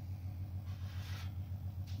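Small electric motor of a homemade magnetic stirrer running with its speed turned down, giving a steady low hum. A soft hiss comes in briefly near the middle, which the builder calls normal at reduced speed.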